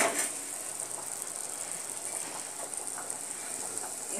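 A knock as a flat iron tawa is set on the gas stove, then a steady hiss of cooking on the lit stove for the rest of the moment.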